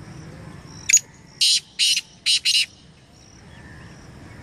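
Black francolin calling: one short loud note about a second in, then a rhythmic run of four loud notes, the last two close together. Faint high chirps repeat in the background before and after the call.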